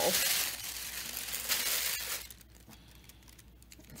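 Thin iridescent plastic film crinkling as it is handled and pushed into a bowl, loud for about two seconds and then dying down.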